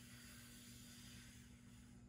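Near silence: a faint, slow in-breath, heard as a soft hiss during a breathing exercise, over a steady low electrical hum.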